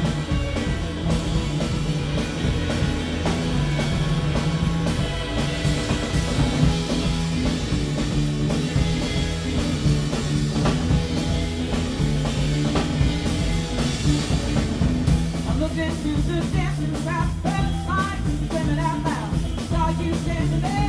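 Live rock and roll band playing an instrumental passage with a steady drum beat and electric bass. A woman's lead vocal comes in about three quarters of the way through.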